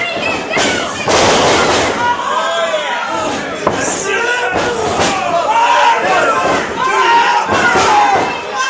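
Ringside crowd at a wrestling match shouting and yelling, many voices overlapping. About a second in, a heavy thud as a wrestler hits the ring mat.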